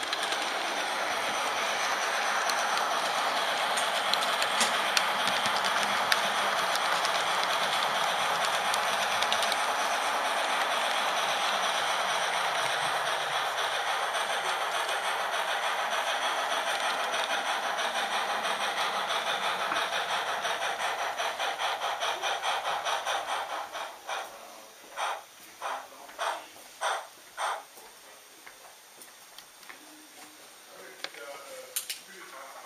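An H0 model train running along the layout with a camera car on board: a steady whirr of motor and wheels with fast, even rail clicks. About 23 seconds in it slows, and the clicks space out into a few separate clacks as it comes to a stop.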